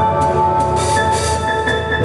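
A rock band playing live, instrumental passage: a keyboard holds a droning note over drum hits about two to three a second, with cymbal washes around the middle.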